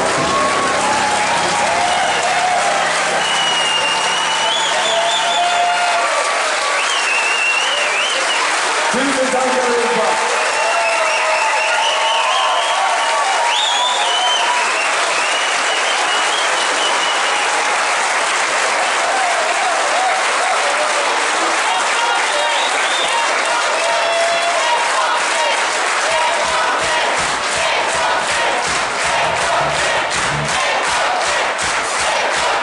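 Live audience applauding and cheering after a song, with voices calling out over the clapping, while the band's last sustained low notes ring out for the first few seconds. Near the end the clapping falls into an even rhythm.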